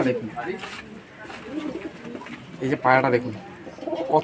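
Domestic pigeons cooing, low and repeated, with a man's voice breaking in briefly about three seconds in.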